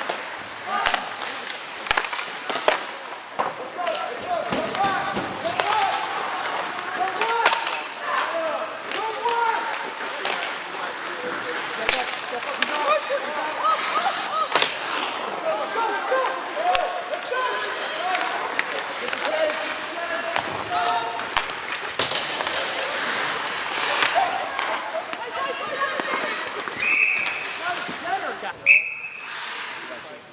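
Ice rink hockey game: many spectators' voices talking and calling out, over sharp knocks of sticks and puck on the ice and boards. Near the end a referee's whistle blows twice in short blasts to stop play.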